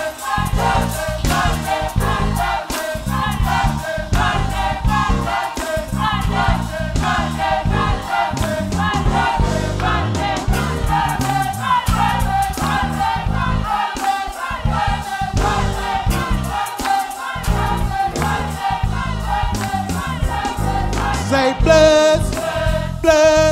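Gospel choir singing a praise song in full voice, many voices together over a rhythmic instrumental accompaniment with a steady beat.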